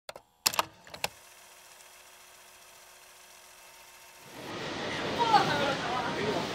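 A few sharp hits of a title-card sound effect in the first second, then a faint hum. From about four seconds in, voices of players calling out on a football pitch, loudest about a second later.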